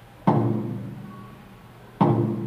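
A taiko drum struck once about a quarter second in, its low boom ringing and fading away over more than a second.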